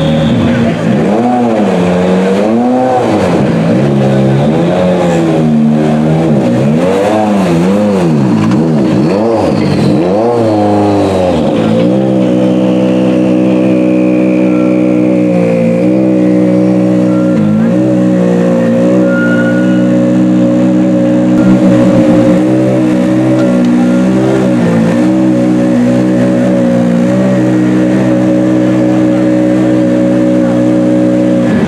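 M-Sport Ford Fiesta RS WRC's turbocharged 1.6-litre four-cylinder engine being blipped, its revs rising and falling about once a second for roughly the first twelve seconds. It then settles to a steady idle with occasional small dips.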